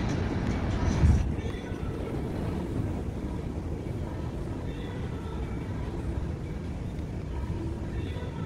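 Low street rumble that drops away about a second in, giving way to the quieter, steady hum of a large hotel lobby with faint distant voices.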